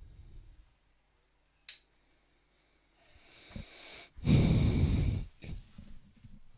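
A person breathing into an open microphone: a sharp click near two seconds in, a softer breath about three seconds in, then a loud exhale lasting about a second.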